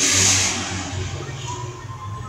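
Regency industrial wall fan running with a steady low hum. A loud rushing hiss fills the first second, then fades.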